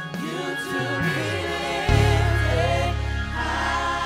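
Gospel worship team singing together in harmony with instrumental backing. Deep bass notes come in about two seconds in, and the music gets louder.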